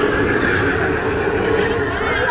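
Slinky Dog Dash roller coaster train rolling along its steel track with a steady rumble, riders screaming and cheering over it.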